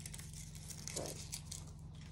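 Faint crinkling and rustling of chocolate packaging being handled, with scattered small clicks, over a low steady hum.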